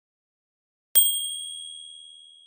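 A small bell struck once about a second in, a single high, clear ding that rings on and fades slowly.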